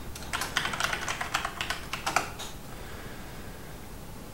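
Typing on a computer keyboard: a quick run of about a dozen keystrokes over roughly two seconds, as a password is entered, then the keys stop.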